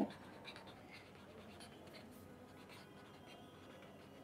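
Faint scratching of a marker pen writing on paper in a run of short, light strokes.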